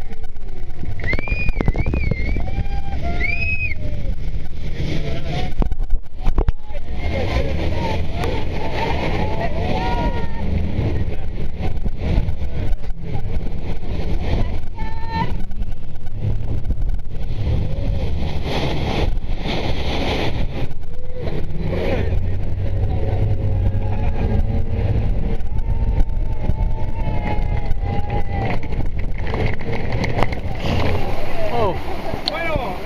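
Heavy rushing water from a large waterfall falls and sprays onto an open tour speedboat, over the boat's running engine. Passengers shriek in high rising cries in the first few seconds and shout again briefly later.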